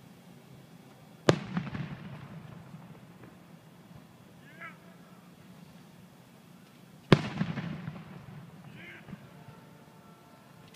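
Aerial firework shells bursting: two sharp bangs about six seconds apart, the first just over a second in, each followed by a rolling echo that dies away over a second or so.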